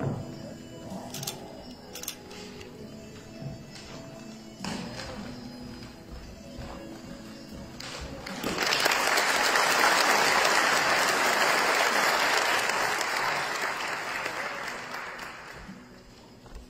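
Soft background music, then about halfway through an audience breaks into applause that holds steady for several seconds and fades out near the end.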